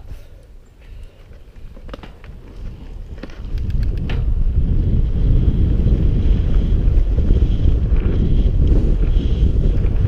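Wind buffeting the action camera's microphone as a mountain bike picks up speed down a dirt-jump line. It is quieter at first with a few short knocks, then turns to a loud, steady low rumble from about three and a half seconds in.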